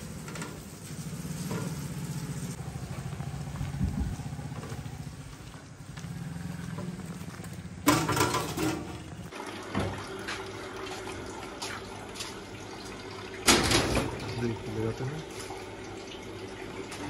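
Metal folding table and stall furniture being handled and set down, with two loud clattering knocks about eight seconds in and near fourteen seconds, each followed by smaller knocks and scrapes. A low steady hum runs under the first half and stops about nine seconds in.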